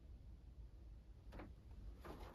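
Near silence: a faint low rumble of room tone, with one brief soft click a little past the middle.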